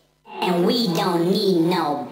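A woman's voice from the track in the mix, starting a quarter second in and holding wavering, sung-like notes, with no beat under it.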